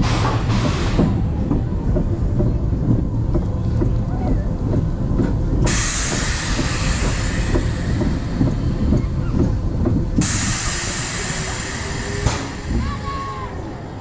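Roller coaster ride heard from a front-row on-ride camera: a loud, steady rumble of the train on its track with wind buffeting the microphone, joined by stretches of rushing hiss.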